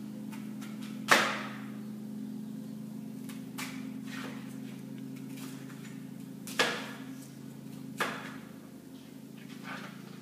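Knife cutting fruit on a board: three sharp knocks, about a second in and near seven and eight seconds, with a few fainter taps between them, over a steady low hum.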